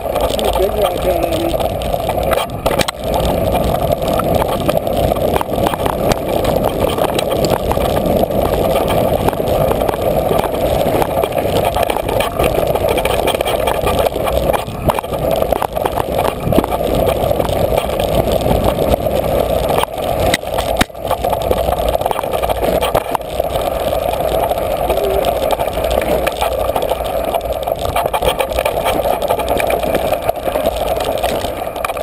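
Mountain bike descending rocky dirt singletrack, heard from a camera mounted near the front wheel: continuous rattling and rumbling of tyres over gravel and stones and the bike and mount shaking, with a steady mid-pitched hum throughout.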